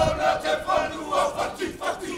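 Haka: a group of voices shouting the chant together in loud, rhythmic bursts.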